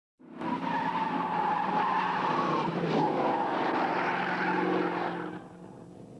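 Race car engine running hard with tyres squealing, the sound dropping away about five seconds in.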